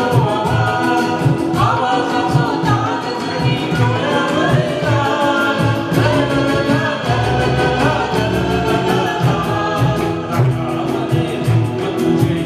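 A man and a woman singing a Marathi film song together as a duet, backed by a live band of congas, tabla and keyboard.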